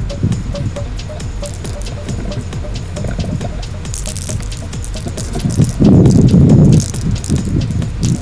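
Background music over short hisses of an aerosol paint can spraying touch-up spots on a brake caliper. A louder low rumble comes about six seconds in.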